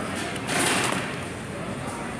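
Murmur of shoppers' voices, with one brief, loud rustling swish about half a second in.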